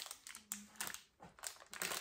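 Small items and plastic packaging being handled on a worktop: a string of light clicks and rustles.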